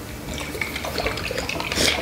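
Garlic-chili fish sauce squirted from a plastic squeeze bottle, spluttering in irregular spurts with a louder spurt near the end.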